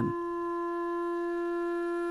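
Background music: one long note held steady in pitch on a wind instrument.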